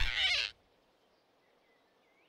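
Cartoon flying squirrel's squeal as it is grabbed, cutting off abruptly about half a second in. Faint forest ambience with a few soft high chirps follows.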